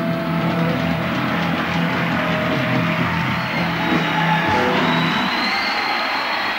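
Live rock band playing in a concert recording, its sustained bass notes dropping away about four and a half seconds in.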